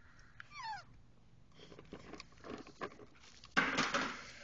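A toddler's short high squeal, falling steeply in pitch about half a second in, followed by scattered light knocks and a loud noisy burst near the end.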